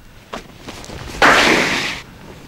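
A shoe sole scraping and sliding across a patch of black ice on asphalt: one scrape of under a second near the end, after a faint tap about a third of the way in. The slide shows that the surface has no grip.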